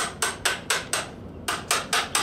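Metal idle air control valve body from a throttle body knocked repeatedly against hard ground, about four to five sharp knocks a second, with a short pause about a second in. The knocking is done to jar loose carbon and dirt deposits so the valve's sticking plate moves freely.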